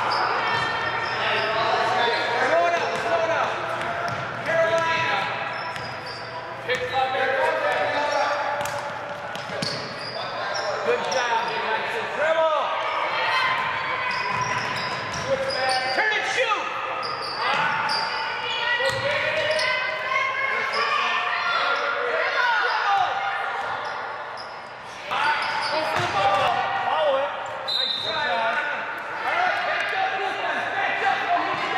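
Basketball game in a gym: a basketball bouncing on the hardwood floor with many short knocks, under continual voices of players and onlookers, echoing in the large hall.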